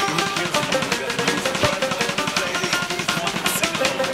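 Instrumental passage of a Celtic punk rock song: full band with a fast, driving drum beat under sustained melody notes.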